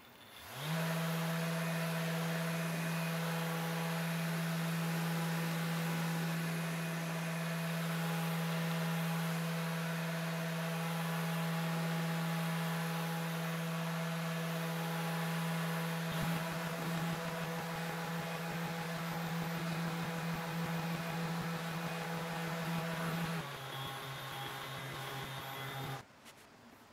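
Electric random orbital sander spinning up and then running steadily with a motor hum while it buffs the waxed cast iron table saw top through a cloth pad. About two-thirds through, a rougher rattle joins the hum, and near the end the pitch drops before the sander stops.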